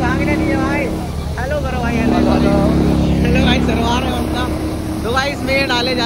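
Tractor-driven wheat thresher running while threshing wheat, a loud steady drone, with voices talking over it.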